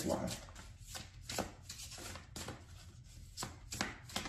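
Tarot cards being handled and shuffled off camera: a string of irregular sharp taps and slaps, a few a second.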